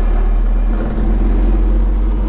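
Peterbilt semi truck's diesel engine running steadily under way, heard from inside the cab as a low, even drone with road noise.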